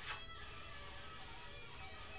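Electric guitar played through effects pedals in another room, faint held notes ringing on. A brief, sharp, louder sound comes right at the start.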